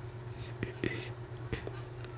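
Hand-sewing stretch fabric with a needle and thread: a brief soft rustle as the thread is drawn through the fabric, and a few faint clicks of handling. A steady low hum runs underneath.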